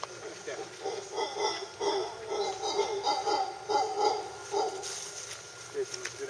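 Mantled howler monkeys calling in the canopy: a rapid run of short, rough calls, about three a second. The calls start about half a second in and stop near the five-second mark.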